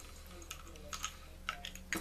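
Penn 450SSG spinning reel's front drag knob being unscrewed and the spool slid off the spindle: a handful of light, irregular clicks of small plastic and metal parts.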